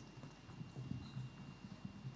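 Faint, irregular footsteps on a stage, a run of soft knocks and thuds heard through the podium microphone.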